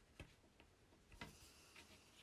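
Near silence, with two or three faint ticks of a coloured pencil's tip against a wooden clothes peg as hair is coloured onto it.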